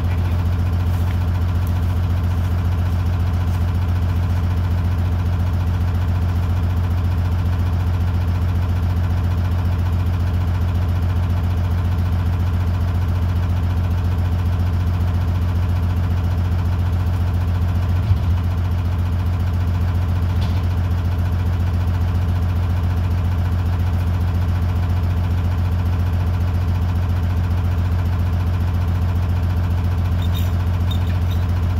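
A logging skidder's diesel engine idling steadily, a constant low hum, with one short knock about eighteen seconds in.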